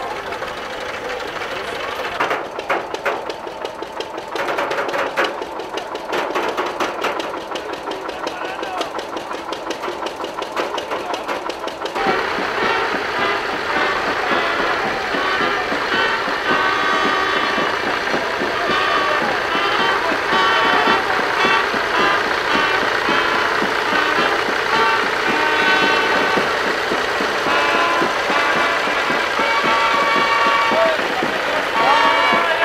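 A tractor engine running close by with a rapid knocking beat and voices around it; about twelve seconds in the sound changes abruptly to a marching brass band of trumpets and tuba playing.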